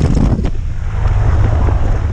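Wind from a light aircraft's propeller buffeting the camera microphone, a heavy low rumble from the plane's running engine beneath it, with a single knock about half a second in.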